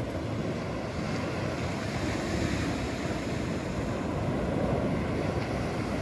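Steady wash of surf on the beach, mixed with wind noise on the microphone.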